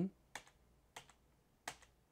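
Three keystrokes on a computer keyboard, about two-thirds of a second apart, as the Shift+D shortcut is pressed to step the mesh down its subdivision levels.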